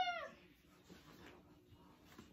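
The end of a high-pitched, meow-like cry that falls in pitch and dies away just after the start, followed by quiet room noise.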